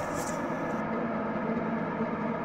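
Steady background drone of sustained tones: a music underscore holding without change.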